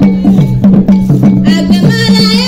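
Ewe traditional drum ensemble playing zigi dance music: a fast, evenly repeating rhythm of drum and bell strokes. Singing voices come in near the end.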